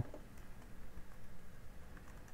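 Quiet room tone with a few faint taps of fingers on a laptop touchpad.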